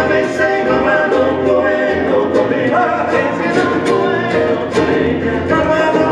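Male vocal trio singing a romantic bolero in close harmony, accompanied by strummed and plucked nylon-string guitars and an acoustic bass guitar.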